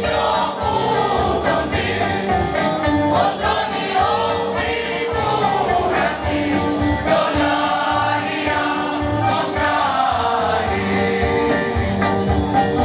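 Mixed choir of men and women singing in parts, holding sustained chords, over a steady beat.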